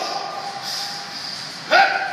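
Low, steady background room noise, then a man's loud yell near the end.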